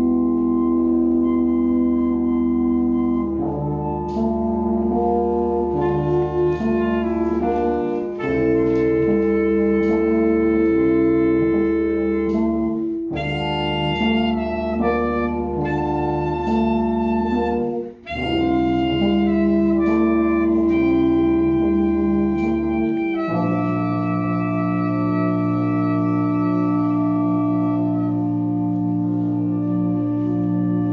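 School concert band of saxophones, trumpets, French horn and tuba playing a slow passage of held chords that change every few seconds. There is a brief break about 18 seconds in and a new sustained chord from about 23 seconds.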